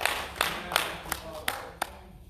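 Hand clapping: a run of sharp claps, about three a second, getting fainter and stopping just before the end.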